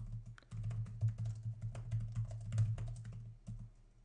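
Computer keyboard typing: a fast run of key clicks as a command line is typed and entered, over a low steady hum.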